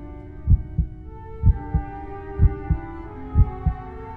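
A heartbeat, a low double thump (lub-dub) about once a second, over held music chords that shift in pitch every second or two.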